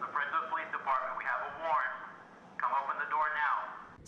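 A police officer's voice amplified through a bullhorn, thin and tinny, calling out in two phrases, the second beginning about two and a half seconds in.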